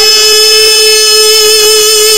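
A single long musical note held steady in pitch through the whole moment, rich in overtones, within a naat recording.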